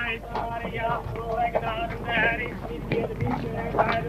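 Horses' hooves clip-clopping on a paved street as a column of riders walks past, over a murmur of voices.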